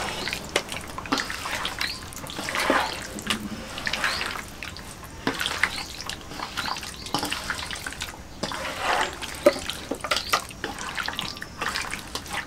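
Raw fish pieces being mixed by hand with a thick wet turmeric and spice paste in a steel bowl: irregular wet squishing with small clicks and scrapes against the metal.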